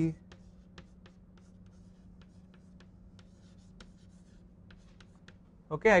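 Chalk writing on a blackboard: a string of light, sharp taps and short scratches as a line of an equation is written, over a faint steady low hum.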